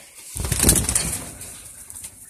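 A burst of rustling and scuffling about half a second in, strongest for a moment and then fading over the next second.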